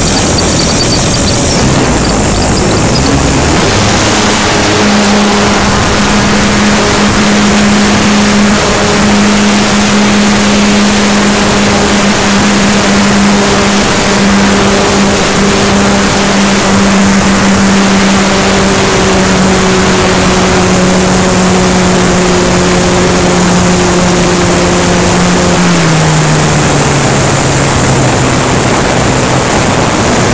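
Radio-controlled model airplane's motor and propeller heard from an onboard camera, running at high power under heavy wind rush. Its pitch rises a few seconds in as the plane takes off, holds steady through the climb, then drops near the end as the throttle is eased back.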